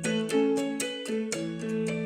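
Electronic keyboard playing a quick melody of short notes, several a second, over a held lower chord.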